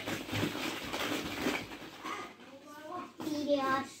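Plastic ball-pit balls in their clear plastic sleeve rustling and clattering as a child handles them, for about the first two seconds, followed by a young child talking.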